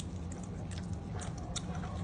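Golden retriever chewing a treat just taken from a hand: a few faint crunching clicks.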